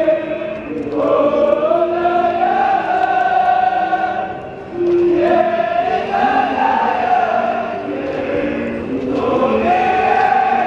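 A high school baseball team of young men singing their school song together in chorus, loud and full-throated, phrase after phrase, with a short break for breath about four and a half seconds in.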